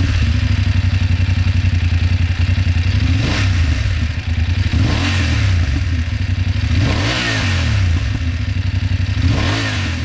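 BMW F 850 GS parallel-twin engine idling, heard close at its stock silencer, with four throttle blips whose revs rise and fall back to idle, about two seconds apart.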